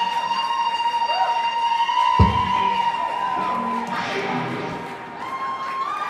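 A live band's closing note ringing out as one sustained high tone, with a single low thump about two seconds in, while the audience cheers and whoops.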